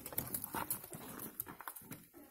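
Faint, scattered taps and shuffles from a goat being handled, its hooves knocking on the hard floor.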